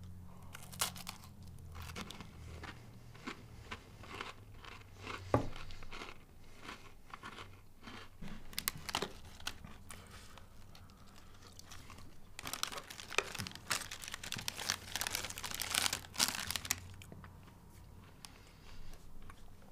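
Crisp chocolate ice-cream cone being bitten and chewed with scattered crunches. In the second half a plastic wrapper crinkles heavily for about five seconds.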